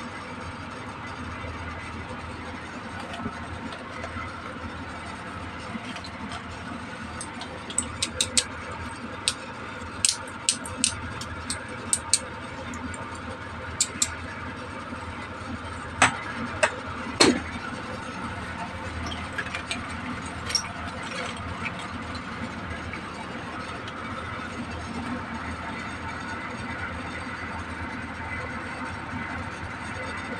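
Small plastic toy accessories being set down on a plastic toy vanity: a run of light clicks and taps about a quarter of the way in, then two louder clacks near the middle, over a steady background hum.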